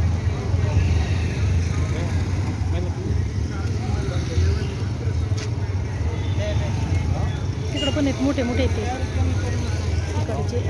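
Busy street-market background: a steady low rumble of road noise, with people talking nearby that grows more noticeable near the end.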